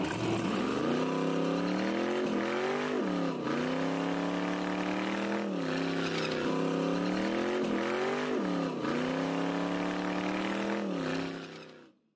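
Car engine held at high revs during a tire-smoking burnout, its pitch dipping sharply and climbing back every two seconds or so over a steady hiss, then fading out at the end.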